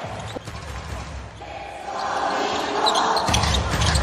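A basketball bouncing on an arena court. About halfway through, crowd noise swells into cheering.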